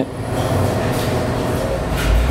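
Steady low rumble with a hiss, running evenly under a pause in the talk.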